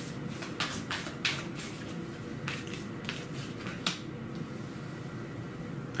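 A deck of tarot cards being shuffled hand over hand: an irregular run of short, crisp card flicks, denser in the first few seconds and then thinning out. A faint steady hum runs underneath.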